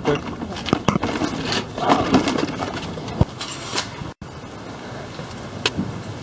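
Scattered knocks, clatter and shuffling of scrap and plastic buckets being loaded into a car's back seat.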